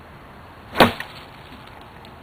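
A single hard overhead swing coming down in one quick whoosh and hit a little under a second in, with a faint click just after.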